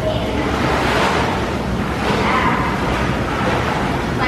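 Steady rushing and churning of water in an indoor swimming pool, with faint voices in it.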